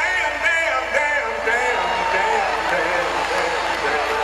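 Live R&B concert music: a singer's wordless, gliding vocal runs over a band's sustained keyboard chords.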